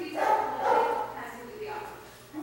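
Gordon Setter puppy whining in two short pitched bursts in the first second, then quieter.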